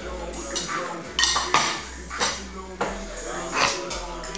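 A metal fork and ceramic plate clinking, with two sharp clinks a little over a second in as the plate is handled and set down on a wooden chair seat.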